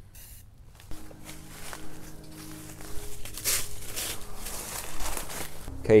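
Aerosol spray-paint can hissing briefly, about halfway through, as it marks the trunk of a dead tree, with footsteps and rustling in dry leaf litter.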